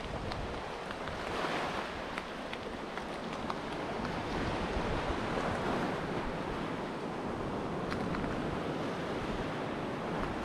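Surf washing onto the beach, with wind on the microphone and a few faint clicks scattered through.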